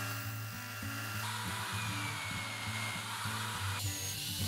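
Belt sander running with a plywood part pressed against its belt to shape the teeth: a steady motor hum under the hiss of sanding, which grows stronger about a second in.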